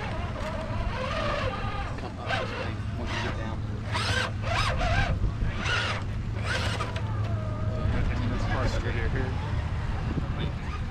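Indistinct talk from people nearby, in several short stretches, over a steady low rumble.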